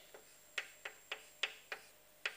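Chalk tapping on a blackboard while writing: a series of about six short, sharp clicks, roughly three a second.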